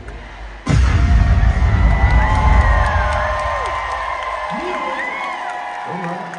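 Live hip-hop concert in an arena: after a brief dip, a deep bass hit from the sound system comes in about a second in and slowly fades over several seconds, while the crowd cheers and whoops and performers shout over it.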